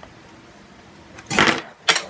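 A fidget spinner fumbled and dropped: a short scuffing clatter a little past halfway, then a sharp click near the end.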